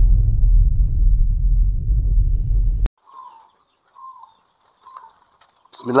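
A loud, deep intro whoosh effect cuts off abruptly about three seconds in. It is followed by three faint, short, evenly spaced coos from zebra doves (perkutut) in the aviary.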